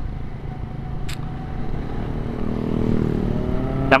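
Yamaha New Vixion motorcycle engine running under way with steady road and wind rumble, heard from a camera mounted on the bike; about two and a half seconds in the engine note rises and grows louder as it accelerates. A brief click sounds about a second in.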